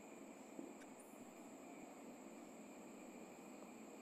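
Near silence: faint steady background hiss.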